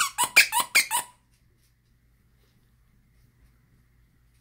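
Plush hedgehog squeaky toy squeaking as a dog bites down on it: a quick run of about five sharp, high squeaks in the first second.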